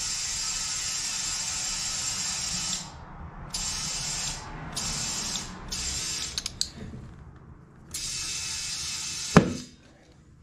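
Compressed air hissing into a Pitbull Rocker XOR ATV tire through a clip-on chuck: one long blast, then several short spurts. About nine seconds in comes a single loud pop as the bead snaps onto the rim, which means the tire has seated.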